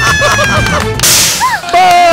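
Television show sound effects: a held electronic tone over a man's short bursts of laughter, a sharp whoosh about a second in, then a brief chirp and another long held tone.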